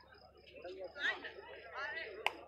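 Crowd chatter and shouting voices, with two rising shouts, one about a second in and one near the end.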